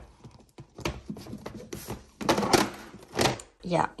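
Clear plastic storage boxes scraping and clattering against each other as one is pulled from the middle of a stack, with a louder clatter about two seconds in and again near three seconds as the boxes above it drop down.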